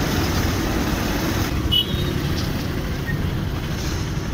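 Motorbike engine and road noise, heard from the rider's seat while riding slowly in town traffic: a steady low rumble. A brief high beep sounds about two seconds in.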